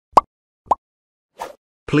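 Two short, rising cartoon pop sound effects about half a second apart, then a soft click about a second and a half in.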